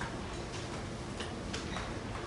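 Chalk writing on a blackboard: a few sharp taps and short scratches at uneven intervals as the letters go down, over a steady low room hum.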